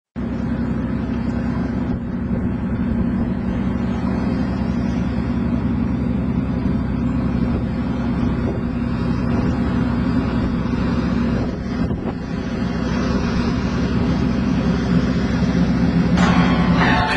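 Engine of a military amphibious craft running steadily under power as it crosses the water towards the shore, a continuous low drone with a brief dip about three quarters of the way through.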